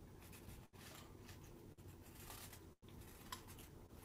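Near silence: faint room tone with a few soft rustles of fingers handling tying thread, the background cutting out briefly twice.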